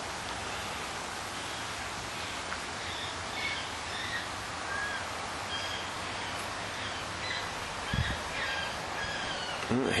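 Birds chirping, many short, high, scattered calls, over a steady outdoor background hiss, with one low thump about eight seconds in.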